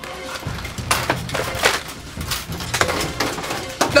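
Aluminium ladder clanking and rattling as it is lifted and handled, a run of irregular metallic knocks.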